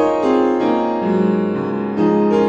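Piano music from a piano tuned by the traditional tuning-curve method: several notes ringing together while a lower line steps down.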